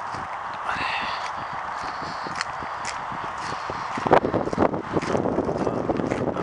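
Footsteps crunching on a gravel path over a steady rushing hiss, the steps becoming louder and denser from about four seconds in, starting with a sharp click.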